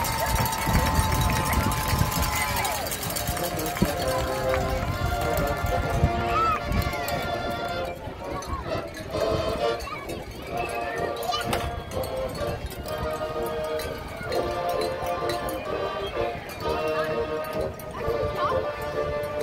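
High school marching band playing, with brass chords held over a drum beat.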